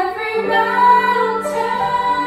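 A children's choir singing together with a woman's solo voice at a microphone, holding long sung notes.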